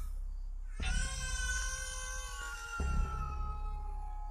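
A long, drawn-out animal cry that slowly falls in pitch for about two seconds, followed by a thinner, steady held tone near the end.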